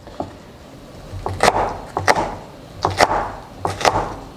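Chef's knife chopping a yellow bell pepper on a wooden cutting board. The blade strikes the wood in quick pairs about once a second, starting about a second in.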